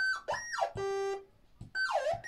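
Electronic synthesizer sound: a short phrase of a high beep, a falling sweep and then a steady lower buzzy tone. It plays once and begins again near the end.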